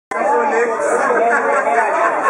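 Crowd chatter: many people talking over one another in a busy bar room, cutting in abruptly right at the start.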